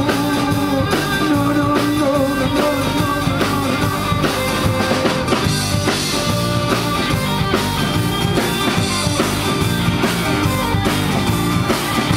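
Rock music from a full band: drum kit keeping a steady beat under electric guitars and bass.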